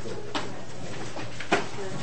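Faint, indistinct voices murmuring in a room over a low steady hum, broken by two short sharp knocks; the second, about one and a half seconds in, is the louder.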